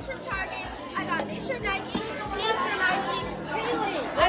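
Children's voices chattering and calling out over one another, with no clear words.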